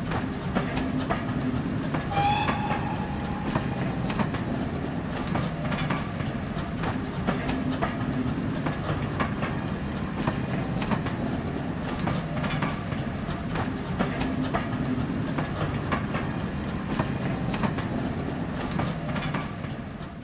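Railway coaches running past: a steady rumble with repeated clicks of wheels over rail joints. A brief high squeal comes about two seconds in.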